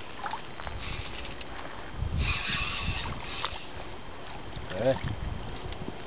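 Water splashing and sloshing as a hooked carp fights at the surface near the bank, loudest for about a second starting two seconds in.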